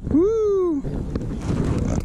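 A man's drawn-out vocal exclamation: one long call rising then falling in pitch, lasting under a second, then quieter handling noise with a couple of clicks.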